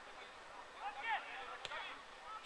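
Distant shouting of players across a football pitch, with one sharp knock of a football being kicked about three quarters of the way through.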